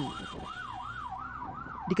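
Electronic emergency siren wailing up and down quickly, about two and a half cycles a second, in an even repeating sweep.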